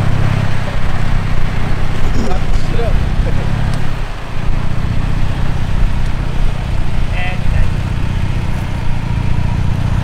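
2017 Toyota Tacoma's engine idling steadily as the truck crawls along in four-low first gear on 5.29 gears.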